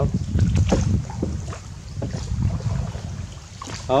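Gusty rumble of wind buffeting the microphone, with water noise from a small boat moving along a river channel. A voice calls out briefly near the end.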